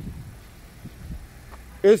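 Faint, steady low outdoor rumble of street background noise, then a man's voice begins near the end.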